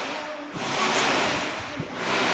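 Steady rushing background noise in the recording, with faint voices under it.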